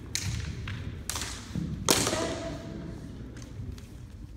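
Sharp clacks of competition naginata, bamboo blades on oak shafts, striking during a bout: three main hits, the loudest about two seconds in, ringing in the hall, with lighter taps around them.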